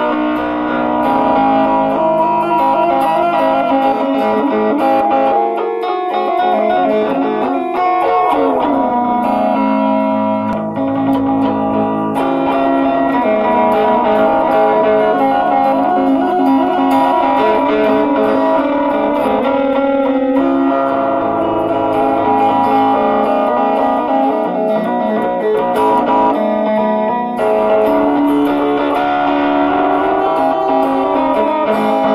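Guitar music with sustained, ringing notes and a downward pitch slide about eight seconds in.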